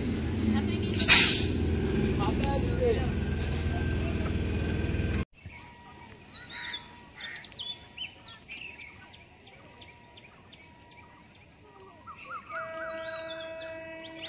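Low rumble of an electric local train standing at a station platform, with one sharp hiss about a second in. It cuts off abruptly to birds chirping beside the railway track, and near the end several steady tones begin.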